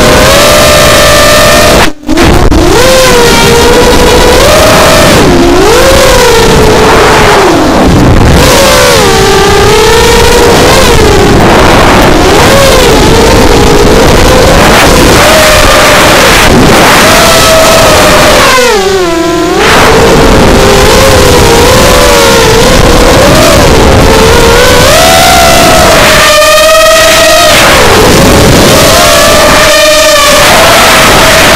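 Bantam 210 racing quadcopter's brushless motors and propellers whining on the onboard camera microphone, very loud, the pitch rising and falling constantly with the throttle through turns. There is a brief dropout about two seconds in and a deep drop in pitch just before the twentieth second, when the throttle comes off.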